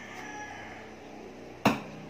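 A thrown dart hitting with one sharp knock about one and a half seconds in, after a quiet stretch. The throw misses.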